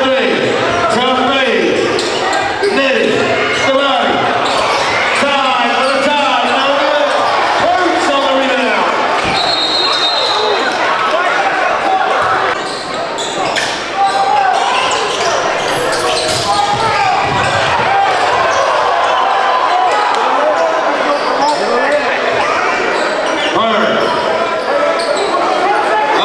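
Crowd in a gym shouting and talking over a live basketball game, with a basketball dribbled on the hardwood court, echoing in a large hall.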